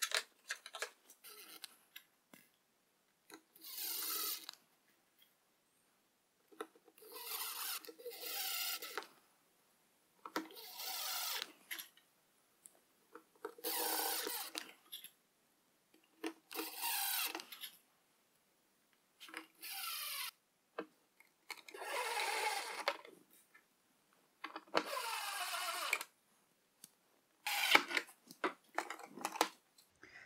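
Makita 18-volt cordless drill driving small screws into plywood panels, in about nine short runs of a second or so each, with pauses between. The motor's pitch rises within some of the runs.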